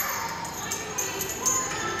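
Indoor play-centre background: distant voices and faint music, with light jingly clicks.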